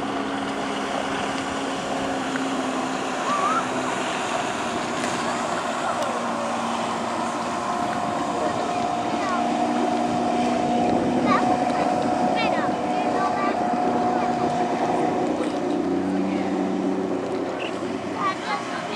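Motorboat engine running steadily at speed, with rushing water and wind noise on the microphone. A few brief, high rising cries come from the people riding the towed tube.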